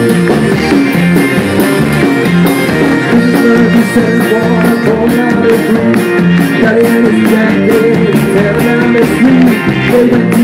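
Live rock band with a bagpipe playing loudly: a driving drum beat and electric guitar under the bagpipe's melody.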